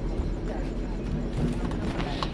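Steady background hum with faint, indistinct voices.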